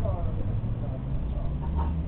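Steady low rumble of road traffic: cars and a van driving away along the street, with faint voices in the background.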